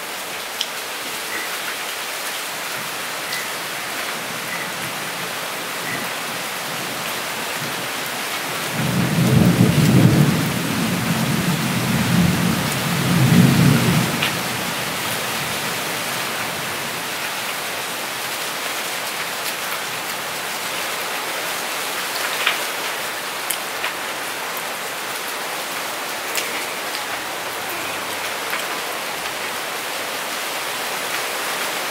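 Steady rain-like hiss throughout, with a deep rolling rumble like thunder swelling three times between about 9 and 14 seconds in. A few faint clicks of fingers working rice on a steel plate.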